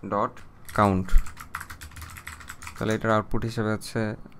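Typing on a computer keyboard: a quick run of key clicks as a line of code is entered.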